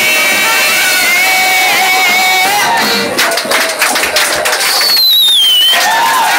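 Live band with violin, guitar and drums playing: a held note, then a stretch of quick, dense strokes, then a high note sliding downward near the end.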